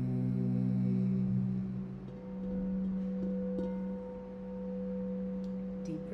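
Crystal singing bowl played with a wand, giving a steady ringing tone. A higher ringing overtone joins about two seconds in, while lower humming tones fade out in the first two seconds.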